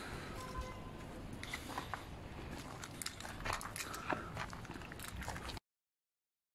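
Faint footsteps crunching irregularly on grit-strewn stone ground, over light outdoor background noise; the sound cuts off abruptly to silence shortly before the end.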